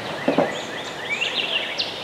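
Several songbirds singing and calling from the riverside woods, many quick chirps and sliding notes over a steady background hiss, with one louder, lower call about a third of a second in.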